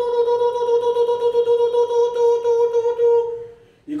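A man's voice holding one long, steady falsetto 'oooh' on a single pitch for about three seconds, fading out near the end.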